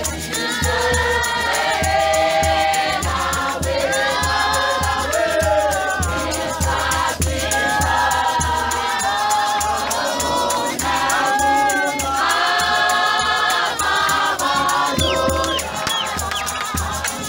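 A large church congregation singing a hymn together, many voices at once, over a steady low beat about twice a second.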